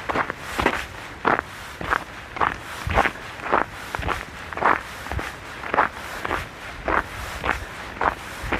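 Footsteps walking through fresh snow at a steady pace, just under two steps a second.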